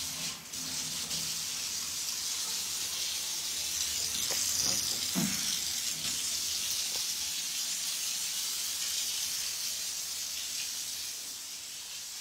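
A steady hiss, swelling a little around the middle, with a few faint clicks and knocks.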